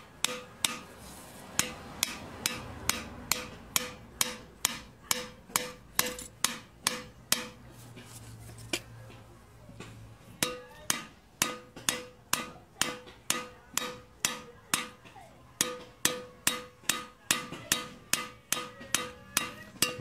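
Hammer striking a screwdriver driven down inside a cylinder sleeve of a Mitsubishi 4D55T turbo-diesel block, about two sharp metallic blows a second, each with a short ring. Each blow cuts the sleeve lengthwise so that it can break free of the block. The hammering pauses for a few seconds about halfway through.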